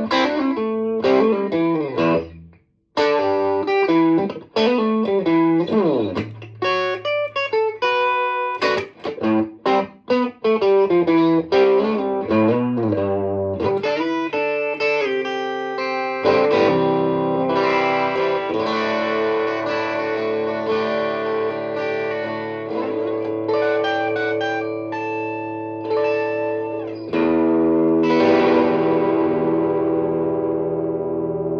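Gibson Les Paul Studio electric guitar played with a clean tone through an amp. Short chords and single notes with brief gaps give way, about halfway in, to sustained ringing chords, and the last chord is left to ring out near the end.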